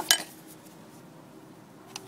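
A single sharp metallic clink as a blade is fitted onto a circular saw's arbor, followed by faint handling noise and a small click near the end.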